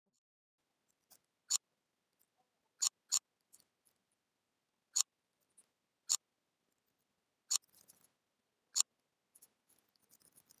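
Sparse, sharp clicks of a computer mouse and keyboard used to edit text: about seven distinct clicks at irregular intervals, with a few fainter ones between.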